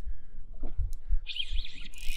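Spinning reel's drag buzzing briefly as a hooked fish pulls line off, once just past halfway and again at the end, over low wind rumble on the microphone.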